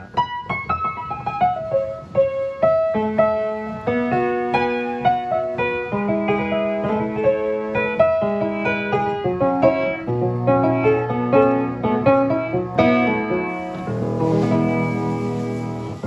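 A 4-foot-7 Gulbransen baby grand piano being played in its worn, unrestored state. A melody of single notes comes first, and bass notes and fuller chords join in about ten seconds in.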